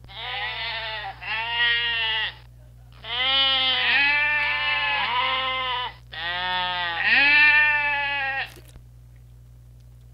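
A flock of sheep bleating, several long calls overlapping at once, in three stretches separated by short pauses.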